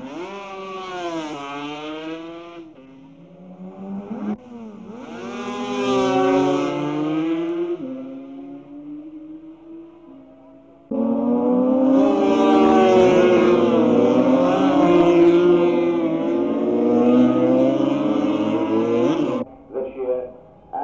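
500cc racing motorcycle engines at high revs, rising and falling in pitch as the bikes pass and change gear. The sound breaks off and restarts abruptly several times. The loudest, fullest stretch, with more than one engine at once, is in the second half.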